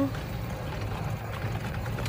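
Steady low rumble of a moving golf cart, with wind buffeting the microphone.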